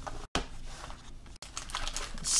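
Light clicking and tapping of a cardboard trading-card box and its packs being handled as the box is opened, with a brief cut-out in the sound about a third of a second in.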